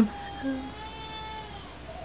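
A baby crying on waking from a nap: one long, faint cry that dips slightly at the end.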